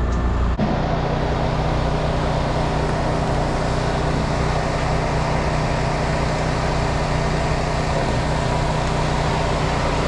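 A machine motor running steadily with a low hum, starting abruptly about half a second in.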